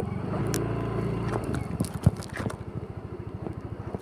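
Small scooter engine idling with a steady low putter. A stronger engine hum sits over it for about the first second and a half, then fades. Two light knocks, about half a second in and about two seconds in.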